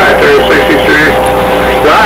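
Radio transceiver in receive on the 10-meter band, playing a distant station's voice too garbled to follow through a heavy wash of static. A steady tone runs under it and stops shortly before the end.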